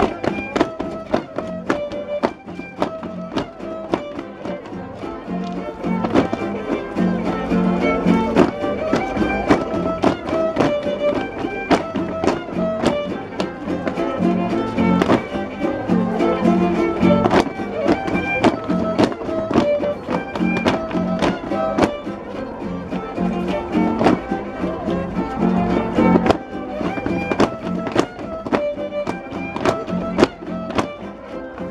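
Violin playing a son for a traditional folk dance, with a steady beat of sharp taps under the melody.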